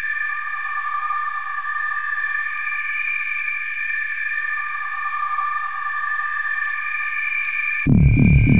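Electronic music: a synthesizer chord held steady with no bass or drums under it. Just before the end, a loud bass line and a drum beat come in.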